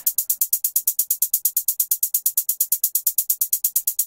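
Programmed trap hi-hat loop playing from FL Studio: a fast, even run of crisp hits, about ten a second. It is being panned left and right by the MAutopan auto-panner's stepped shape.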